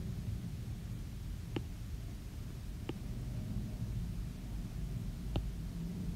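Steady low room hum with three faint, light ticks, one about a second and a half in, one near three seconds and one past five seconds: an Apple Pencil tip tapping on the iPad Pro's glass screen while painting petals.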